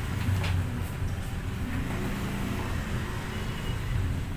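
A steady low rumble of background noise, with faint rustles of paper as the pages of a booklet are handled.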